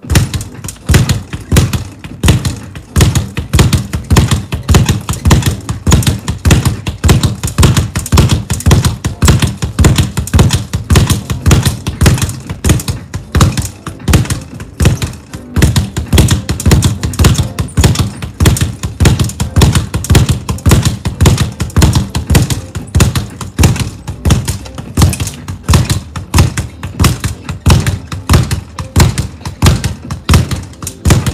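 Speed bag being punched in a fast, steady rhythm: a continuous run of rapid knocks as the bag rebounds off its wall-mounted platform.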